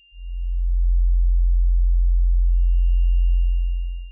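Deep sine-wave synth bass note, live-coded in TidalCycles, swelling in over about half a second, held, then fading away just at the end. A faint high pure tone sounds briefly at the start and again from about two and a half seconds in.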